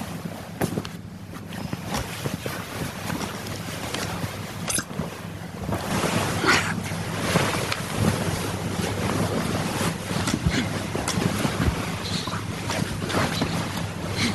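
Duvets and bedding rustling close to a microphone, an uneven crackly rustle that grows louder about six seconds in, over a steady low hum.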